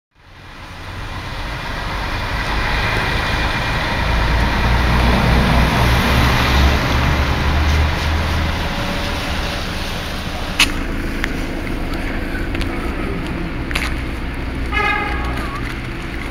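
Town street traffic: a motor vehicle passing with a low engine rumble that swells in the middle, over steady street noise. A sharp click about ten and a half seconds in, and a brief pitched toot near the end.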